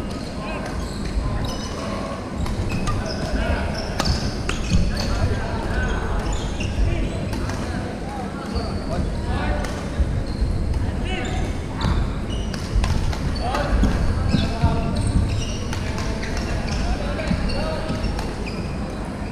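Badminton play in a large wooden-floored sports hall: sharp racket hits on shuttlecocks, short squeaks of court shoes on the floor, and distant players' voices, all echoing in the hall.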